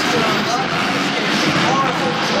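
Dirt bikes racing around the track with engines revving, mixed with crowd babble and an announcer's voice over the arena PA.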